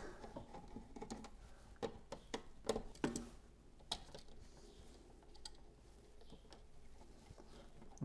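Faint, scattered clicks and small knocks of a wall switch being handled: unscrewed and pulled out of its electrical box.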